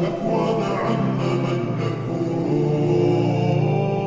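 Slowed, reverb-heavy, bass-boosted Arabic nasheed: layered voices chanting long held notes.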